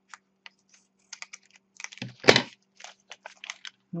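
Scissors snipping through a foil clay package and the wrapper crinkling as hands open it: a run of small crackles and clicks, with one louder crackle about two seconds in.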